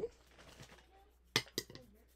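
A sharp click about a second and a half in, then two lighter clicks: hard empty product containers being handled and set down.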